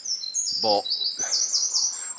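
A small songbird singing a quick, unbroken run of short, high chirping notes that step up and down in pitch.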